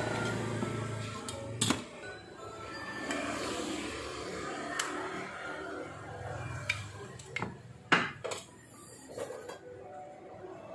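Background music under several sharp clinks and knocks of metal motor parts and hand tools being handled and set down on a metal-strewn workbench, the loudest knock near the end.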